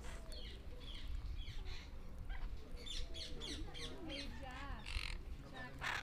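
A group of parakeets squawking and chattering: a run of short, sharp calls, busier from about three seconds in, with a longer harsh call near the end.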